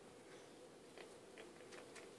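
Siamese kitten mouthing a schnauzer's neck fur: a few faint, small wet clicks over a steady low hum.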